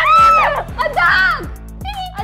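Background music with a steady beat, with a girl laughing loudly over it through the first second and a half.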